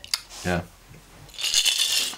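Ice cubes rattling inside a glass mason jar cocktail shaker as it is tipped and shaken, a brief jangle starting about a second and a half in.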